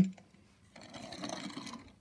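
Faint rustling handling noise that starts about a second in, from a hand moving among the model trucks and the phone.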